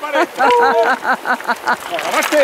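A woman laughing in a quick run of short, repeated bursts.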